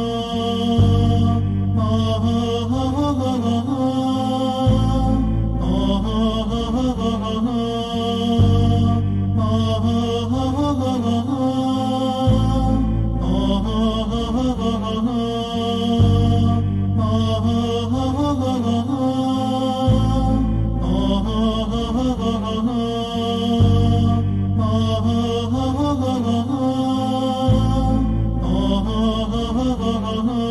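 Devotional interlude music: a chanted vocal line over a low, steady backing, repeating in phrases of about four seconds.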